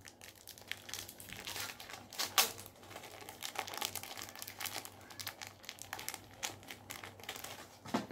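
Small plastic tackle packet crinkling in the hands as it is handled, with irregular crackles throughout; the sharpest comes about two and a half seconds in.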